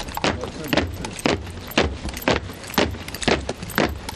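Honour guard of sailors marching in step on stone paving: sharp boot strikes about twice a second, over a steady low rumble.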